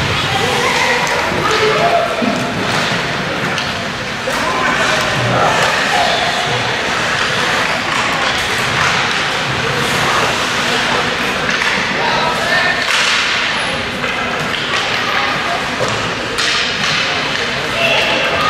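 Sounds of youth ice hockey play in an indoor rink: scattered thuds and knocks of puck and sticks against the boards, over a steady wash of rink noise and indistinct shouting from spectators and players.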